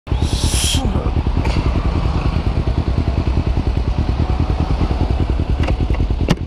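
Kawasaki Ninja 250's parallel-twin engine idling steadily, with an even, fast low pulse that does not rise or fall. A brief rustle near the start.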